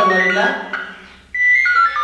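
A short electronic jingle of about four clear notes stepping down in pitch, coming in about a second and a half in, after a man's voice.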